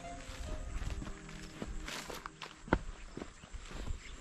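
Footsteps crunching over dry, cracked earth clods and grass at an irregular pace, with one sharper crunch near the middle. Faint background music plays underneath.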